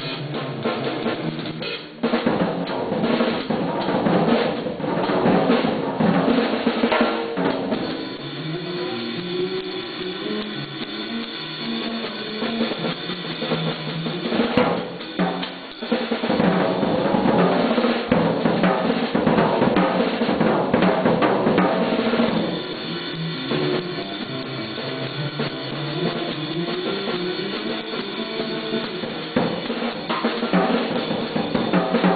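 Acoustic drum kit played in a jazz style: busy, loud phrases on snare, bass drum and cymbals, with short breaks about two seconds in and again about sixteen seconds in.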